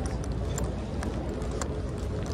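Footsteps on a paved walkway, a series of light clicking steps at walking pace over a steady low outdoor rumble.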